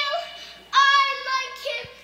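A four-year-old girl singing a made-up song in a high voice, with a loud held note starting just under a second in.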